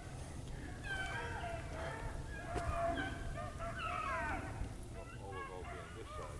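A pack of beagles baying on a rabbit's trail, several dogs' voices overlapping in long, bending cries that thin out near the end.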